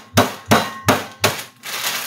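Blocks of dry ramen noodles bashed against a kitchen counter to break them up: four sharp knocks about three a second, then a crackly rustle near the end.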